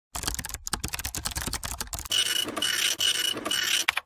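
Typing sound effect: a quick run of key clicks as text is typed on screen, giving way about two seconds in to a denser, louder clatter broken by a steady high tone in four short stretches.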